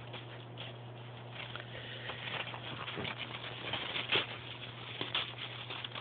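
Snow crunching and scuffing under moving feet and paws: soft, irregular steps with a few sharper crunches about three, four and five seconds in.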